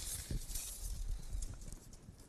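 Tape measure being pulled up along a wooden shipping crate, with a short scraping hiss at the start, then light knocks and taps of hand and tape against the wood.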